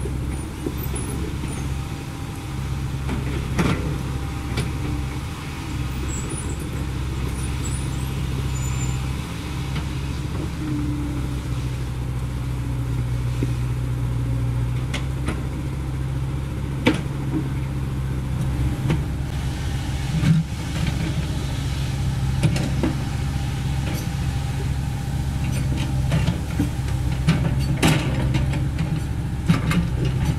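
CAT 307E2 mini excavator's diesel engine running steadily while digging, its note shifting a little as the hydraulics work. A few sharp knocks and clanks from the digging stand out, the loudest about two-thirds of the way through.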